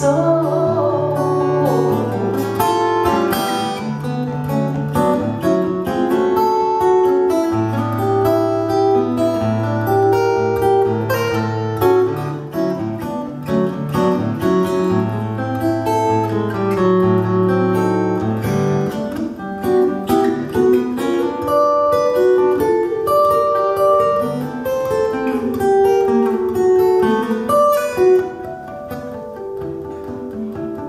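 Acoustic guitar playing an instrumental break in a bossa nova song: a picked single-note melody over low bass notes, with the bass notes stopping about two-thirds of the way through.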